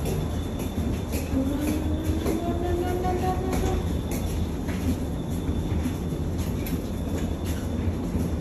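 Several hard-shell wheeled suitcases rolling along a jet bridge floor: a steady low rumble with a scatter of light clicks from the wheels.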